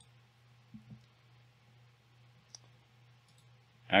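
A few faint computer mouse clicks, a pair just under a second in and another about two and a half seconds in, over a steady low electrical hum.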